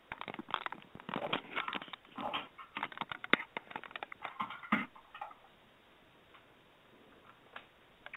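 Irregular crackling, clicks and rustles from the open microphones of unmuted webinar participants, heard over the conference line for about five seconds and then dropping to near silence.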